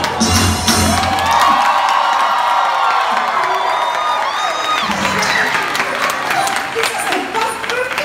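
Stage-show music playing while a theatre audience of children and adults cheers and shouts; the music's bass drops out about a second and a half in.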